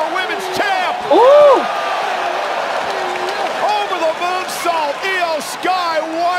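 Wrestling TV broadcast audio: excited commentary voices over a steady arena crowd din, with one loud, drawn-out shout rising and falling in pitch about a second in.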